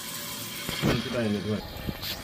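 Water rushing steadily into the tank of a newly installed Glacier Bay McClure one-piece toilet through its fill valve, the tank refilling after the supply is turned on. It is filling quickly.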